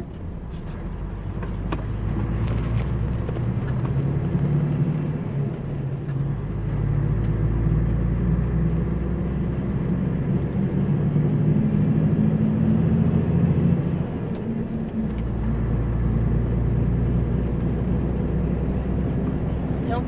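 Scania 113 truck's diesel engine running under way, a low steady drone heard inside the cab. The engine note grows louder over the first few seconds and breaks briefly twice, about six and fifteen seconds in.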